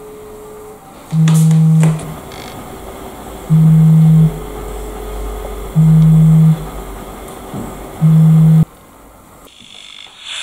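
Smartphone vibrating on a hard tabletop for an incoming call: four loud, even, low buzzes a little over two seconds apart. The last buzz is cut short when the phone is picked up.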